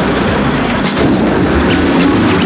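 A car engine running with a steady rumble that echoes around a concrete underground car park, with scattered sharp clicks over it.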